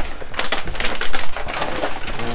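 Large plastic protein-powder pouches crinkling and rustling as they are handled, with dense irregular crackles.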